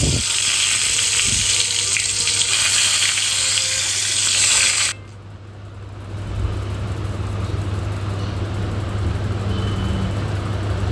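Whole pointed gourds (potol) sizzling in hot oil in a wok. The sizzle is loud for about five seconds, then drops suddenly to a quieter sizzle that slowly grows again, over a steady low hum.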